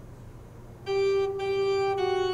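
An organ starts playing a little under a second in: held chords with a bright, reedy tone that move to a new note shortly after, over a low steady room hum before it.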